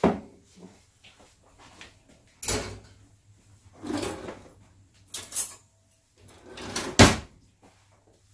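Kitchen handling noises: about five separate knocks and clunks with quiet gaps between them, the sharpest and loudest about seven seconds in.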